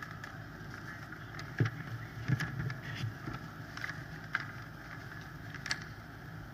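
Low, steady background rumble picked up by an open podium microphone, with a few faint clicks and knocks scattered through it.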